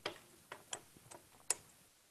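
A few faint, irregular clicks, about six in under two seconds and the sharpest about one and a half seconds in, as of small hard objects being handled on a desk.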